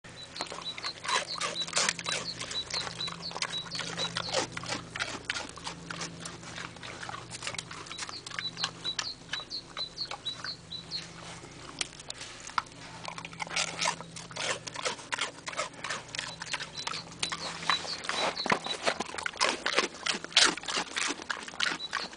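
A pig crunching and chewing hard, dry rusk (Zwieback): a dense, irregular run of sharp crunches that goes on throughout.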